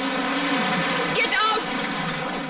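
An open jeep's engine revs as it pulls away through shallow water, with the rush and splash of water thrown up by the wheels.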